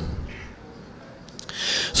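A pause in a man's miked talk: faint room noise, then a breath drawn in near the end before he speaks again.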